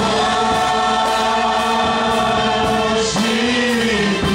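Gospel church choir singing a worship song through handheld microphones, holding one long chord for about three seconds before moving on to new notes.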